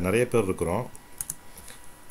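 A man talking for about the first second, then a pause with a few faint clicks.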